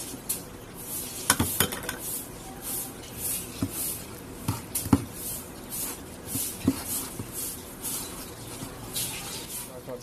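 A metal spoon stirring oil into flour in a bowl, clicking against the bowl a few times, then hands rubbing the oil through the dry flour. The rubbing makes a rhythmic scratchy rustle about twice a second.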